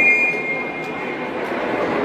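A referee's whistle in one long, steady blast that stops about a second in, over the chatter of spectators in a sports hall.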